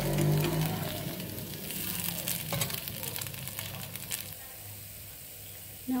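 Rava dosa sizzling in a nonstick frying pan as it is turned with a steel spatula, with clicks and scrapes of the spatula against the pan about two seconds in. The sizzle grows brighter from then until about four seconds in, then settles lower.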